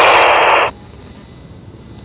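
Handheld FM transceiver's receiver hiss from a weak satellite downlink at low elevation. The hiss cuts off abruptly about two-thirds of a second in, leaving a low background.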